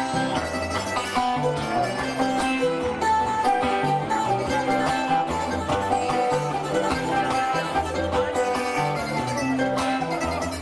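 Cuban punto guajiro accompaniment on acoustic guitars and other plucked strings, with a moving bass line, playing the instrumental interlude between the improvised sung décimas.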